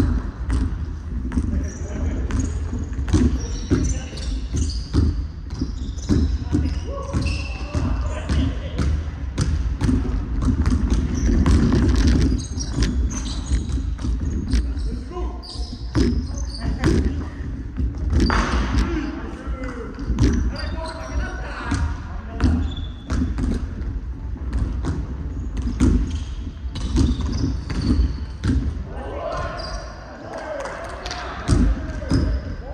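Basketballs bouncing on a hardwood court, with many sharp bounces throughout, echoing in a large arena. Players' voices call out over the bouncing.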